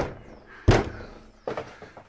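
Four short, dull thuds of a hand knocking on van body panels lined with Dodo Mat butyl sound-deadening sheet; the first two are the loudest. Each knock stops almost at once instead of ringing, the sign that the deadening has killed the tinny resonance of the bare metal.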